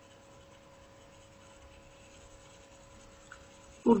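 Faint scratching of a stylus writing on a tablet, over a faint steady hum. A man's voice starts right at the end.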